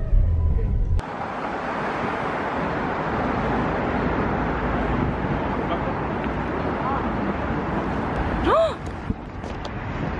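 Low car-cabin road rumble for about a second, cut off suddenly by a steady outdoor hiss of street ambience. A brief voice is heard near the end.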